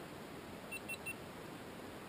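Three quick, high electronic beeps just under a second in, over a steady faint hiss.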